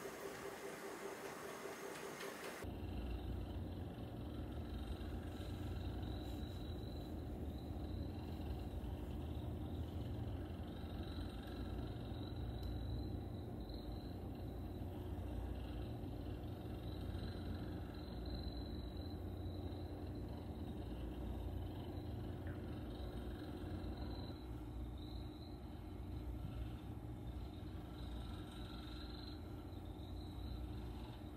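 Tabby cat purring steadily close to the microphone as its head is stroked, starting about three seconds in. Before that, a steady hiss.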